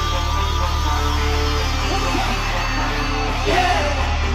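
A K-pop song played loud through a concert PA, with a heavy, steady bass line, live vocals and an audience screaming on top.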